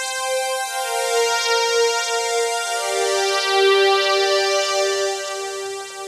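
A synthesizer pad playing sustained chords on its own, changing chord twice, with the lowest note stepping down at each change.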